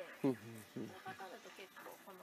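Quiet conversational speech with a brief laugh near the start.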